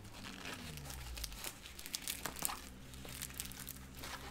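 Plastic packaging crinkling and rustling in short, irregular crackles as a diamond painting canvas is unwrapped.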